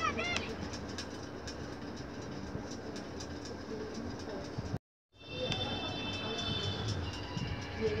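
Animated-film soundtrack of steady, dense rumbling effects and music. It cuts out suddenly to silence a little before five seconds in, then resumes with sustained high tones over the rumble.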